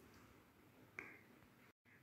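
Near silence, broken once about a second in by a single faint, short click.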